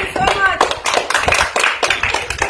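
A small group of people clapping their hands, a dense, uneven run of many claps together, with voices talking or calling over the clapping.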